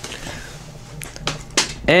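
Pokémon trading cards being flipped through by hand, card sliding over card with a few light snapping clicks, before a man starts speaking at the very end.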